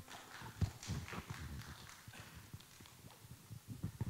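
Faint, irregular knocks and rubbing from a handheld microphone being handled as it changes hands, over quiet auditorium room sound.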